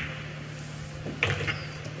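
Pool balls clicking about a second in, as the seven ball is struck and pocketed, over a steady low hum.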